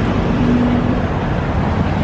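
Street traffic: cars and a van passing through an intersection, a steady engine and tyre noise with a faint engine hum early on.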